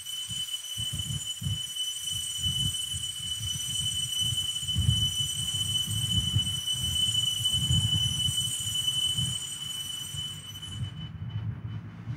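Altar bell rung at the elevation of the chalice during the consecration. It gives one high, steady ringing tone with overtones, held for about eleven seconds and fading out near the end, over a low, uneven rumble of church room noise.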